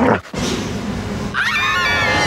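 Film soundtrack of animated guard dogs: a short sharp hit at the start, then the dogs growling, with louder snarling cries coming in over the last half second.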